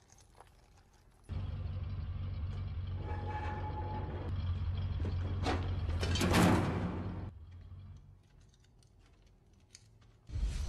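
A low, steady vehicle engine rumble starts suddenly a little over a second in. It swells to a loud rush around six seconds, then cuts off sharply at about seven seconds, leaving only a faint tail.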